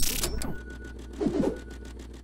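Sound design of a TV channel's animated logo sting: it opens loud with a glitchy burst, then settles into a fast mechanical clicking, about ten ticks a second, like a ratchet, over a low hum, with a brief swell of falling tones a little past one second.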